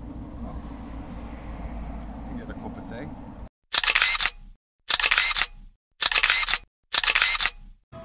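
Steady low rumble, then after a cut four loud camera-shutter click sounds about a second apart, each about half a second long with silence between, as on an edited photo slideshow.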